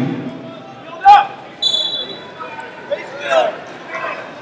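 Scattered voices calling out in a large echoing hall, with one sharp loud thump about a second in and a brief high steady tone a little after.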